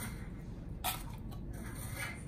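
A metal spoon scooping tuna out of an open tin can, with one sharp click about a second in and a couple of faint ticks just after.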